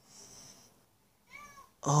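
Mostly quiet, then a brief high-pitched call about one and a half seconds in, with a voice beginning right at the end.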